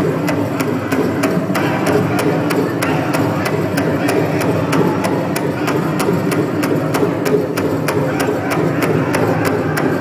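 Powwow drum struck in a fast, steady beat of about three strokes a second, with a group of singers over it: a fancy-dance song.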